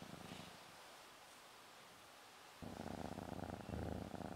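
Domestic cat purring while held. The purr fades out about half a second in and starts up again a little after two and a half seconds.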